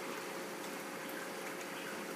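Steady rush of water flowing into a reef aquarium sump during an automatic water change, with a steady hum from the pumps.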